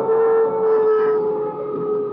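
One long held note from a dramatic film background score. It is steady, with a slight rise and then a slow fall in pitch, over a faint low rumble.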